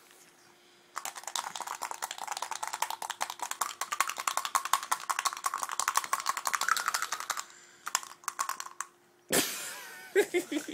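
Rapid, steady clicking rattle of a small handheld object being shaken fast back and forth in a shake-weight motion. It starts about a second in and stops after about six seconds. A short rushing noise comes near the end.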